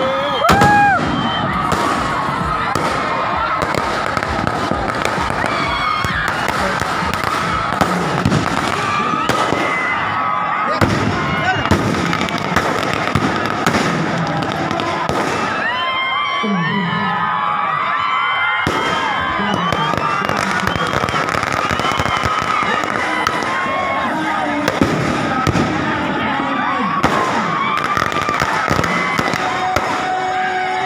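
Strings of firecrackers going off in a dense, unbroken run of rapid cracks, with a large crowd shouting over them.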